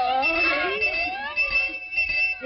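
High-pitched, squeaky cartoon voices of several characters chattering over one another, their pitch gliding up and down, with a thin steady high tone underneath.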